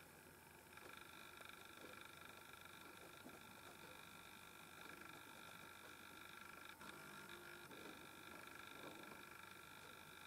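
Near silence: room tone with a faint steady hum of several high tones, and one faint click about seven seconds in.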